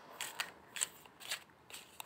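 A deck of round tarot cards being shuffled by hand, the cards snapping against each other in about five short, sharp clicks.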